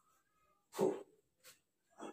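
A man's short voiced "oh" of effort a little under a second in, otherwise near quiet, with a faint thin high tone at the start and again near the end.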